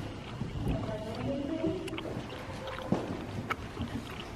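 Horses' hooves thudding dully on soft arena sand: a few irregular footfalls, the sharpest near the end. A faint wavering tone sounds in the first half.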